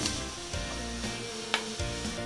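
Thick banana-stem kootu bubbling as it simmers down and thickens in an open pressure cooker, stirred with a spatula, with one sharp click about one and a half seconds in, over soft background music.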